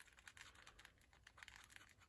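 Candle wax being grated on a small handheld metal grater: faint, quick, irregular scratchy clicks.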